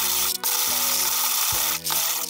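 Hand-cranked wooden box coffee mill grinding whole coffee beans, a steady grinding noise that breaks off briefly twice, about half a second in and near the end.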